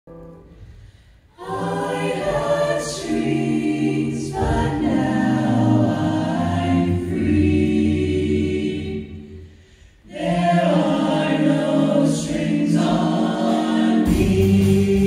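Mixed choir of men's and women's voices singing sustained chords into handheld microphones. The voices come in about a second and a half in, drop away briefly near ten seconds, then start again.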